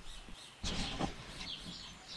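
Birds chirping faintly in the background, with a soft knock about a second in.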